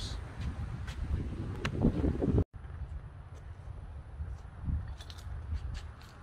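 Wind buffeting the microphone as a steady low rumble, with a few faint clicks. The sound cuts out completely for a moment about two and a half seconds in, then the rumble resumes.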